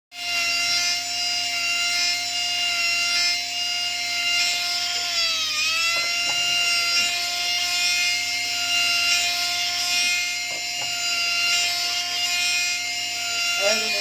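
Jeweller's electric rotary handpiece (micromotor) running with a steady high whine and a grinding hiss as it works a small gold piece. Its pitch sags briefly about five seconds in, then comes back up.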